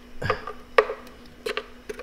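Spatula scraping and tapping inside a plastic blender jar of blended cashew: a few light, separate ticks and knocks, mostly in the second half.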